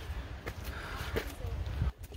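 Low wind rumble on the microphone, with faint scuffs and taps of hiking boots and trekking poles on rock.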